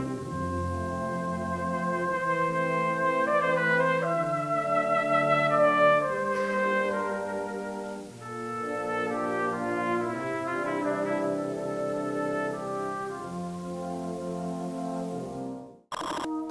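A brass band cornet playing a solo melody over sustained brass band chords underneath. The music cuts off suddenly just before the end.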